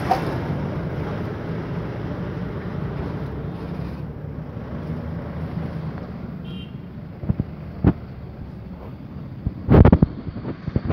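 Steady low rumble of a motor vehicle engine running, with a few sharp knocks in the last three seconds, the loudest just before the end.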